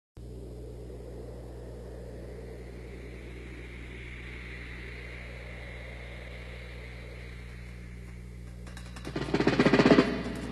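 Steady jet engine noise from an F-15 fighter in flight, a rushing sound with a whine that swells and fades midway, over a low electrical hum. About nine seconds in, a much louder rattling burst cuts in.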